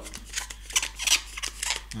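Plastic packaging tape being smoothed down by hand along the edges of a balsa aileron: a run of irregular short scrapes and crinkles of the tape film.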